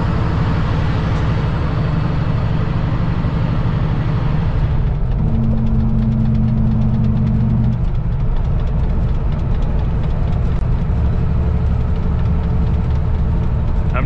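Older Kenworth W900 semi-truck's diesel engine droning steadily while cruising, heard from inside the cab along with road and wind noise. The hiss thins about a third of the way in, and a louder steady hum holds for a couple of seconds around the middle.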